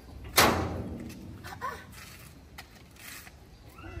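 A red sheet-metal gate bangs once, loudly, about half a second in, as its bolt lock is worked, with a brief metallic ring after it. A few lighter knocks follow.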